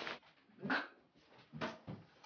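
A man gagging and retching as he rushes to be sick: a short retch, then two quick heaves near the end.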